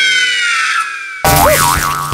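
Cartoon sound effects: a whistle gliding steadily down in pitch, cut off about a second in by a loud, wobbling boing.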